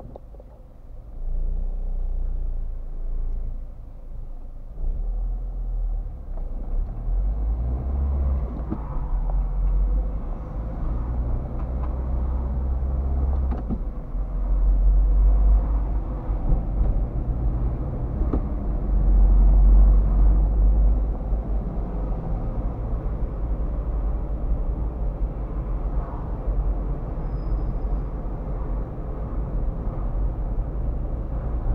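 A car's road and engine rumble heard from inside the cabin, deep and steady, growing louder about a second and a half in as the car pulls away and then drives along a city street.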